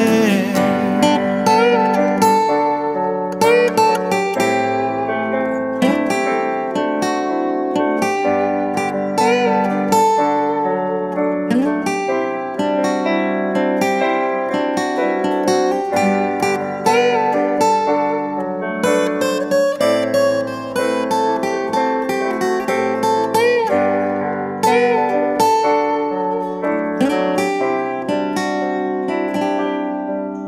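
Instrumental break with acoustic guitar and piano playing together and no singing.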